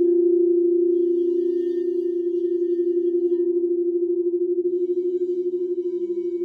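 Crystal singing bowls ringing in long sustained tones that pulse and waver. Two tones ring together, and a lower bowl joins in near the end.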